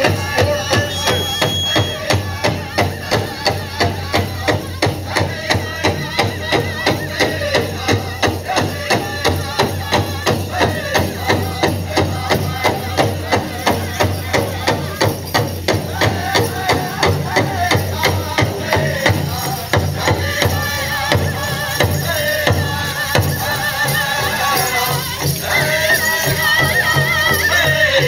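Powwow drum group singing a Grand Entry song over a steady, even beat on a large shared drum, about two to three beats a second. Jingling from the dancers' regalia sounds along with it.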